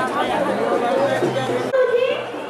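Speech: voices talking over one another amid crowd chatter, cut off abruptly near the end.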